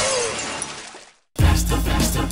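A large glass pitcher smashing in a cartoon sound effect: a sharp crash of breaking glass that fades out about a second in. After a brief silence, upbeat music with a strong beat starts.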